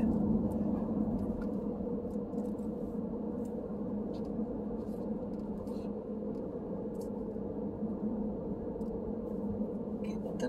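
Steady engine and road noise heard inside a moving car's cabin: an even low hum, with a few faint ticks.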